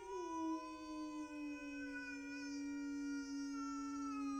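A single long held note in a free improvisation: it slides slightly down in pitch at the start, then stays steady and quiet, with rich overtones.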